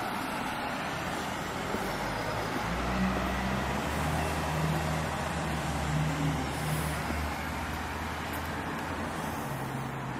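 Street ambience with a motor vehicle's engine running close by, a low hum that comes in about a third of the way through and fades out after about seven seconds.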